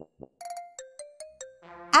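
A short musical jingle of bell-like chime notes, a quick run of several notes a second.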